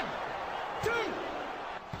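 A man counting "one, two" of a wrestling-style three-count, with a short thud on each count like a hand slapping the mat, over a steady hiss.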